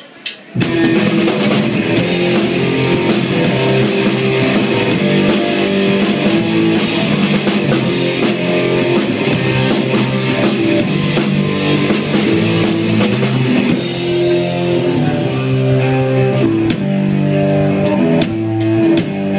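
Live rock band, with electric guitars and a drum kit, starting a song. The band comes in all at once about half a second in and plays at full level with a steady driving beat.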